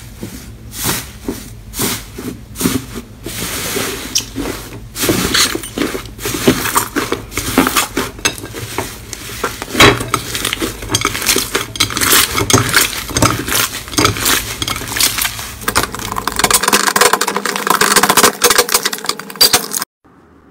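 Hands squeezing and pressing thick foam slime, a dense run of crackling and popping as air trapped in the slime bursts. The crackle grows denser near the end.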